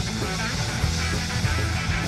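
Live band playing an instrumental passage of a song: electric guitar over a drum kit, with a steady beat and low bass notes.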